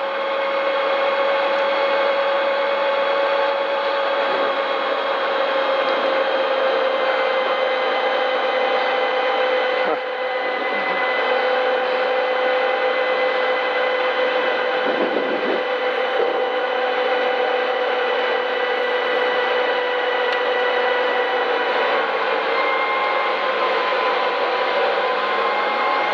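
Rally car's engine and drivetrain running at a steady speed, a constant drone with a whine that holds one pitch, heard from inside the stripped cabin.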